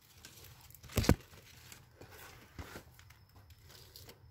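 Hand pushing and pressing a potting soil and perlite mix into a pot around a plant's stems: soft gritty rustling and scraping, with a few light knocks. The loudest is one sharp knock about a second in.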